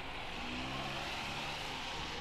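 Distant Alco diesel locomotives approaching: a faint, steady low engine drone with an even hiss over it.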